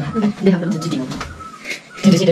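Boys' voices in indistinct chatter with no clear words, trailing off near the end.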